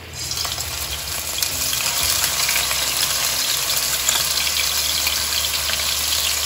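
A crushed paste of shallots, green chillies, garlic and ginger sizzling as it hits hot oil in a kadai. The sizzle starts suddenly as the paste goes in, then keeps frying steadily.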